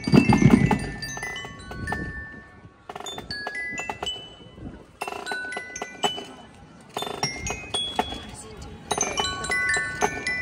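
Marching drum corps playing: snare, tenor and bass drums strike loudly together in the first second. A glockenspiel then plays a ringing melody over lighter, sparser drum strokes, with bursts of drumming again about five, seven and nine seconds in.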